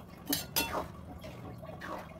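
A metal spoon clinking against a steel pan and stirring watery rajma gravy, as a little water is mixed in. There are a couple of sharp clinks about half a second in and a scrape-and-slosh near the end.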